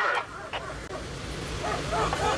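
Police dog whining in short wavering yelps, with a quieter stretch and one sharp click in between.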